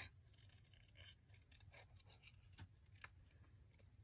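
Faint snipping of small scissors cutting around a paper cut-out: a string of quiet, irregular clicks.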